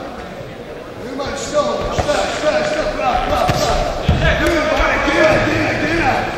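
Several dull thuds from boxers moving and sparring on the ring floor, with men's voices calling out in a large, echoing sports hall.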